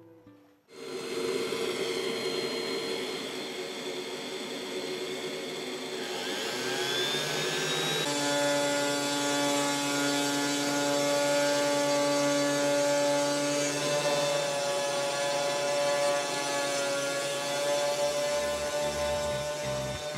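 Small engraving CNC machine milling wood, with its homemade centrifugal-fan dust vacuum running: a steady whine of several tones over a hiss of cutting and airflow, starting abruptly just under a second in. The tones rise in pitch around six seconds in and shift to a new set about eight seconds in.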